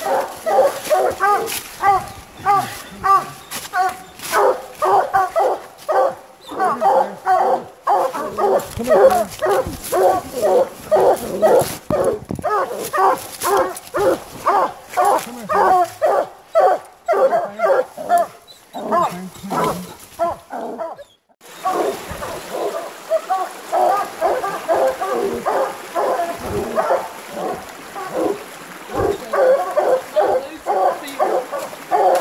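Coonhounds barking treed, a steady run of loud barks several a second, with one short break about two-thirds of the way through.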